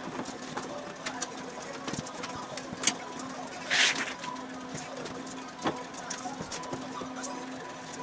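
Scattered metal clinks and knocks of wire wheels and hubs being handled and fitted onto front axle spindles, with a short hiss about four seconds in, over a steady hum.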